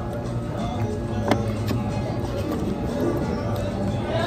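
Background music with a steady low beat, and one sharp click a little over a second in.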